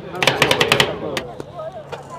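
Metal spatulas chopping ice cream on a cold-plate ice cream pan: a quick run of about eight sharp metal clacks in the first second, then two single clacks.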